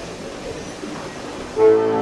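Quiet hall sound, then about one and a half seconds in the accordion and violin come in loudly together on a held chord.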